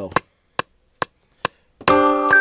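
Sharp metronome clicks at an even pace, about two and a half a second, counting in the MPC software's recording. Near the end a sampled keyboard melody starts playing.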